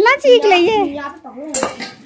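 Steel kitchen utensils clinking and clattering against each other about one and a half seconds in, after a high-pitched voice calls out.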